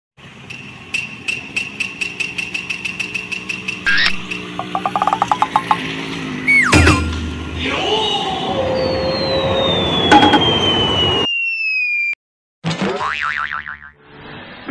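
A collage of cartoon-style sound effects over music. A rapid even ticking runs for the first few seconds, a springy boing comes about seven seconds in, then a long falling whistle. It cuts out abruptly, and a short sweeping effect follows near the end.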